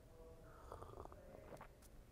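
Near silence, with faint small mouth sounds of espresso being sipped from a small glass.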